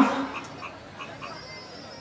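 A man's amplified voice through a public-address system finishes a phrase and trails off, followed by a pause with only faint background noise.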